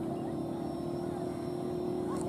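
A steady, even hum or drone, like a running motor, over faint outdoor background noise with a few distant voices.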